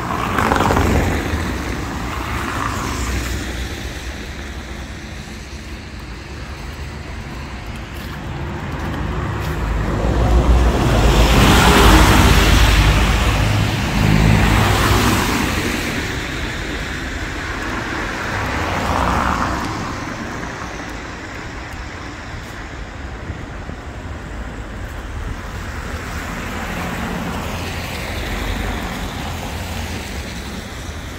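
Cars passing one after another on a wet cobbled street, their tyres hissing on the wet stones; the loudest pass, with a deep rumble, swells and fades from about ten to sixteen seconds in.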